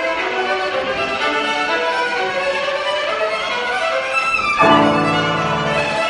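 A violin playing a melody with grand piano accompaniment. About two-thirds of the way through, the music grows louder and fuller, with low piano notes underneath.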